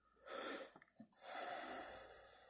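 A man breathing close to the microphone: a short breath, then a longer one that begins just past a second in and trails off.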